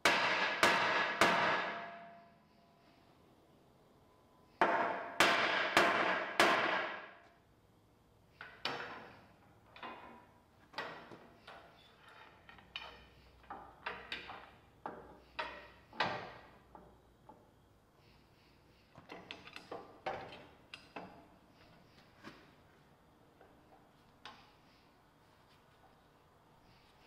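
Metal striking and clanking on the steel loader arm of a Gehl 5625SX skid steer as it is clamped and aligned. Two runs of loud, ringing hits come at the start and about five seconds in, followed by a long string of lighter knocks and clanks.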